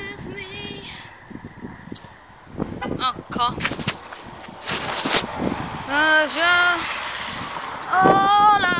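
Children's high-pitched voices calling out in short sing-song bursts three times, with scattered knocks and handling noise in between.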